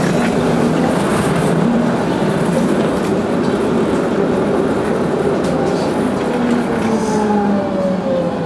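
Electric tram running, heard from inside the car: a steady rumble of wheels on rails with a motor hum. Near the end a whine falls in pitch as the tram slows.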